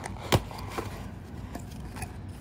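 White cardboard mailer box being opened by hand: one sharp click about a third of a second in, then a few fainter cardboard clicks.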